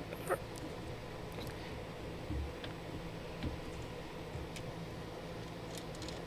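Faint hand-handling of a small microphone holder and its thread adapter: a few light clicks and a soft low thump over a steady low room hum.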